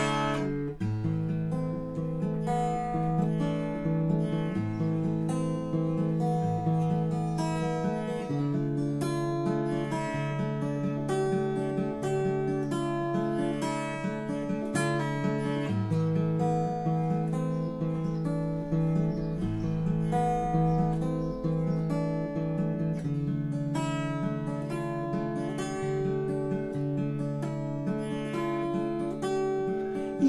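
Acoustic guitar picked steadily through a chord progression in A minor and D minor, colouring the chords with suspended voicings: Asus9 and Asus4, Dsus9 and Dsus4.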